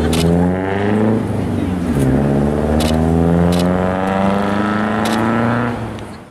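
A car engine accelerating, its pitch rising, dropping back about two seconds in as it shifts gear, then rising again through most of the rest. Several sharp clicks are heard over it.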